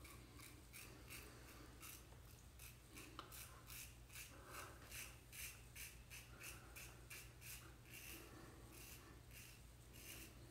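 Faint, short, repeated scraping strokes of a Vikings Blade Emperor adjustable safety razor on its sculpted-bar side, the blade cutting stubble through shaving lather, a few strokes a second.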